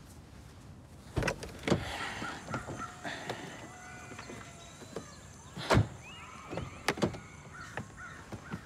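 A car's rear door unlatched and swung open with a couple of knocks, followed by more thumps against the door and seat as a person climbs out and leans back in. The loudest knock comes a little past halfway through.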